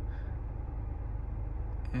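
Car engine idling, heard from inside the cabin as a steady low rumble with a fine even pulse.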